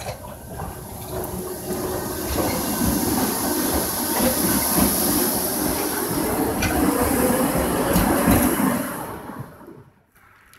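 A two-car Tatra T6A5 tram set passes close by: a rising rumble of steel wheels on rails, with knocks over the rail joints and points. A faint whine climbs in pitch as it goes past, and the sound dies away near the end.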